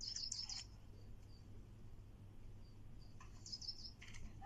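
Birds chirping in short high bursts, once at the start and again near the end, over a faint steady low hum.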